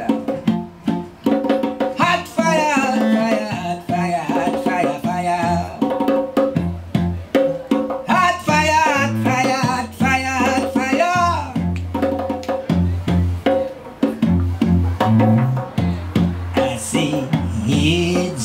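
A bowed cello and a Nyabinghi hand drum playing together: wavering cello notes over a steady hand-struck drum beat, with low bass notes coming in about six seconds in.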